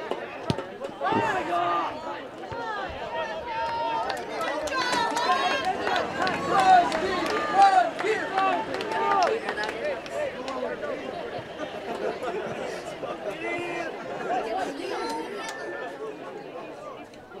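Several voices of players, coaches and spectators shouting and calling out at once at an outdoor soccer match, the calls loudest and highest around the middle.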